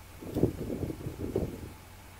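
Wind buffeting the microphone in irregular gusts, a low rumble that dies away before the end, over a faint steady low hum.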